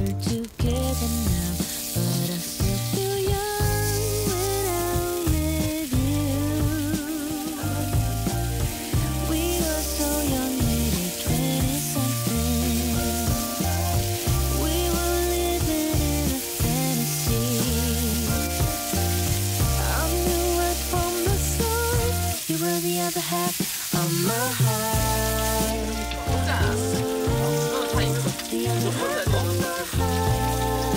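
Pork belly sizzling on a hot ridged grill pan, a steady high hiss that thickens as more strips go on, under background pop music with a steady bass.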